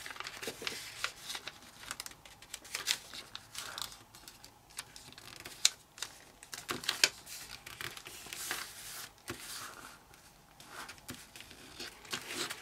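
A sheet of kami origami paper being folded and creased by hand: intermittent rustling and crinkling, with a few sharper crackles in the middle as the folds are pressed flat.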